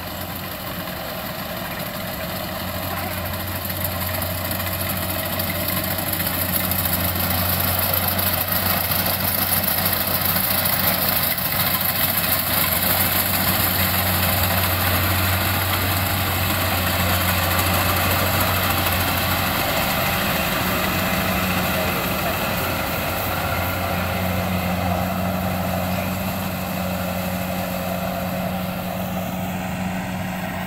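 Rice combine harvester's diesel engine running steadily as it harvests. It grows louder over the first few seconds as the machine comes close, then eases slightly as it works away.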